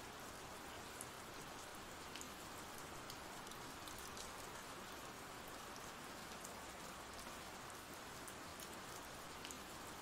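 Faint steady rain from an ambient rain recording, with scattered light drop ticks.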